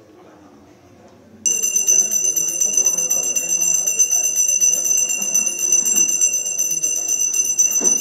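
Brass puja hand bell rung continuously during an aarti. It starts suddenly about a second and a half in and rings on steadily, over a murmur of voices.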